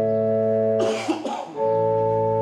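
Organ holding sustained chords of a hymn, breaking off a little under a second in, then starting a new chord about half a second later. A cough is heard in the gap.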